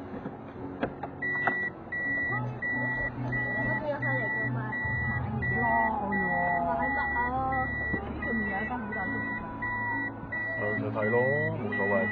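A high electronic warning beep inside a car, pulsing on and off at an even rapid rate from about a second in, over the car's engine and road noise. The engine hum rises about five seconds in as the car pulls away.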